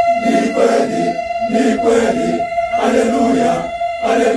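Catholic church choir, mostly men's voices, singing a cappella together in short rhythmic phrases. A thin, steady high tone sounds under the singing throughout.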